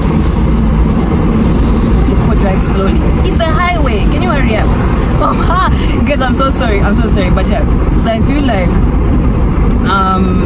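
Steady low rumble of a car driving with its windows open, with a voice making wavering, sing-song sounds over it from about three seconds in.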